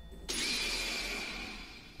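A dramatic sound effect: a hiss with a high, steady ringing tone that comes in about a third of a second in and slowly fades away.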